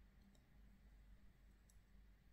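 Near silence: room tone with two faint, short clicks, one about a third of a second in and one near the end.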